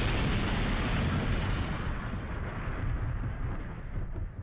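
Edited-in dramatic sound effect of a low, rumbling blast that fades slowly over about four seconds.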